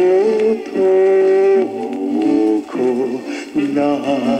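Early-1960s Japanese pop record playing from a Victor flexi disc (sonosheet) on a turntable: music with long, wavering held melody notes that glide between pitches.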